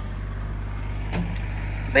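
Compact tractor engine running steadily, a low even hum.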